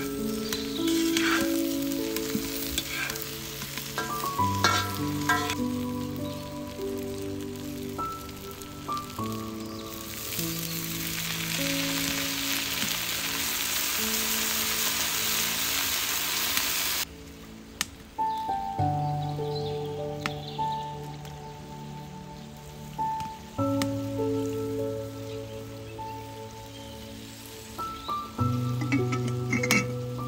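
Vegetables frying and sizzling in a cast-iron wok, with a metal spoon scraping and clicking against the iron as they are stirred. About ten seconds in a much louder sizzle starts as buckwheat is stirred into the hot pan, and it cuts off suddenly about seven seconds later. Calm background music plays throughout.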